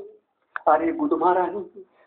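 A man's voice: after a brief silence, one stretch of vocal sound with wavering pitch begins about half a second in and lasts just over a second.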